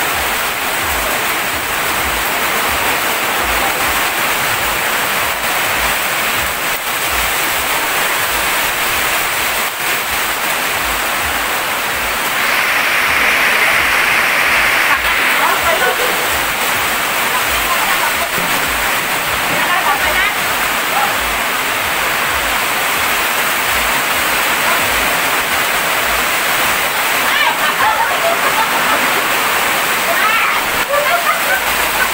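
Heavy rain falling steadily on tarpaulins held overhead, a loud continuous rushing hiss. It swells into a louder rush of water for a few seconds near the middle.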